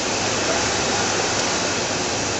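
Steady, even rushing hiss from a running automated guillotine paper-cutting line, with no distinct cutting strokes.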